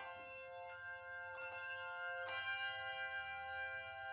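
Handbell choir ringing a slow passage: a few chords struck less than a second apart, then a last chord about two seconds in left to ring on.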